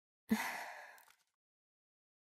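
A person's single sigh: one short breathy exhale, strongest at the start and fading out over about a second.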